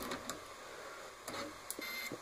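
Faint clicks of multimeter probe tips touching the contacts of a microwave's mains fuse during a continuity test, with a short high beep near the end. The fuse gives no continuity: it has blown.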